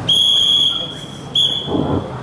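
A whistle blown in signal blasts: one long blast of about a second, then a short one. These are typical of the whistle signals that go with traffic-control arm gestures.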